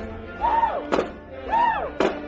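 Marching snare drums in a performance with music: one loud drum hit about a second in, framed by two short pitched tones that rise and fall.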